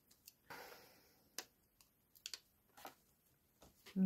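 Near silence with a few faint clicks and a brief soft rustle, from a hand-held revolving hole punch and a thin vellum tag being handled as the tag is worked free of the punch.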